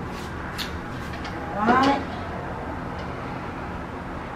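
Beaten egg cooking in a hot nonstick sandwich grill: a steady faint sizzle with a few small crackles. A brief voiced sound comes near the middle.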